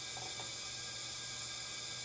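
Steady hiss of compressed air from a leak-down tester charging a cylinder of a Chrysler 361 big-block V8, the air leaking past the piston into the crankcase, over a low steady hum. He suspects stuck rings or a scored piston in that cylinder. A few faint taps near the start.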